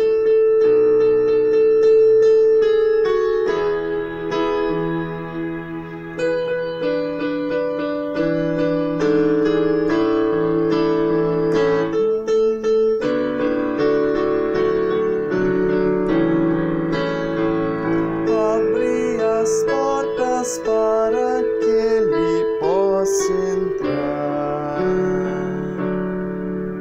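Electronic keyboard in a piano voice playing slow, held chords: the accompaniment to a stanza of a sung responsorial psalm.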